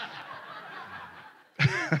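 Congregation laughing at a joke, the laughter dying away over about a second and a half. A man's chuckle starts near the end.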